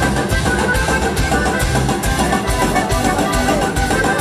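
Live regional Mexican band playing an instrumental passage of a song, with a steady beat.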